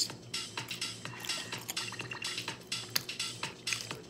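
Metal fork tapping and scraping against a plastic takeout sushi tray in a string of small irregular clicks, over faint electronic dance music in the background.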